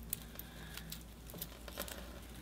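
Faint crinkling and rustling of dry dead leaves being pulled out of a crown of thorns (Euphorbia milii) bonsai with metal tweezers, with scattered light clicks.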